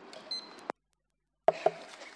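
Faint hearing-room tone with a brief high beep. The conference audio then cuts out to dead silence for about three-quarters of a second and comes back with two sharp clicks, as the sound system switches over to the next speaker's microphone.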